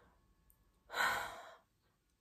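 A woman sighs once, about a second in: a short breathy exhale that fades away.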